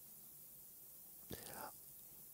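Near silence, broken about one and a half seconds in by a short, soft intake of breath close to the microphone.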